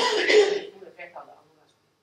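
A person clearing their throat with a loud, rough cough lasting about half a second, followed by a few faint sounds of speech.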